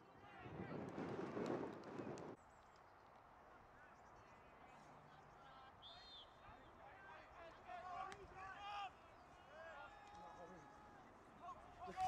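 Faint, distant shouts and calls from rugby players during play. In the first two seconds a loud rush of wind noise on the microphone covers them and then stops abruptly.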